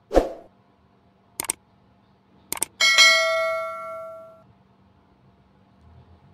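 Subscribe-button animation sound effect: a soft thump, then two clicks about a second apart, then a bright bell ding that rings out for about a second and a half.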